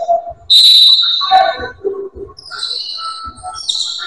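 Referee's whistle blown in one sharp blast of about a second, starting about half a second in, the call that stops play in a basketball game. Shorter high-pitched sounds and a few low knocks follow.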